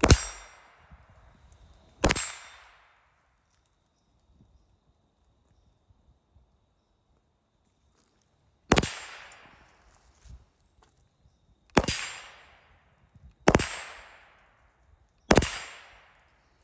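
Rossi RS22 semi-automatic .22 rimfire rifle fired six times, each sharp crack trailing off in a short echo. Two shots about two seconds apart, a pause of several seconds, then four more at an uneven pace.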